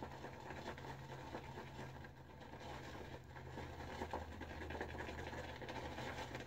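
Shaving brush being swirled through thick shaving-soap lather in a ceramic bowl, building the lather: a faint, soft, scratchy swishing. A low steady hum runs underneath.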